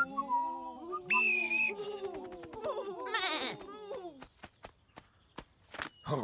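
Animated sheep bleating and grumbling in overlapping voices, cut through by two shrill blasts of a referee's pea whistle, the second one warbling. The voices give way to a run of light taps.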